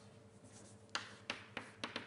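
Writing on a board: a few short, sharp taps and strokes in quick succession, starting about a second in.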